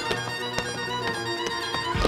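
Fiddle-led string music playing, with the sharp clicks of tap shoes striking the stage scattered through it.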